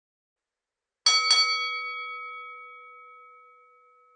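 A bell struck twice in quick succession about a second in, its ringing slowly dying away.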